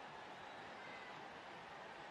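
Faint, steady stadium crowd noise from a football match broadcast, an even wash with no single event standing out.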